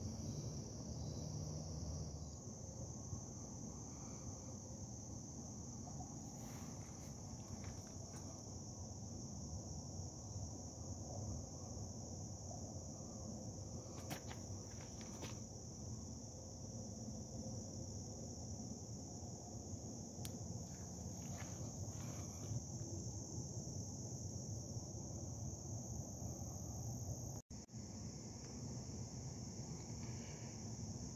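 A steady, high-pitched chorus of trilling insects in one unbroken band, over a low rumble. The sound drops out for a moment near the end.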